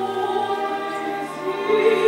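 Female classical soloist singing a lullaby in long held notes, accompanied by a string orchestra, swelling louder near the end.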